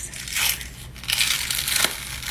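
Latex-and-toilet-paper prosthetic being peeled and torn off the skin: crinkly rustling and tearing in two stretches, with a short sharp click near the end.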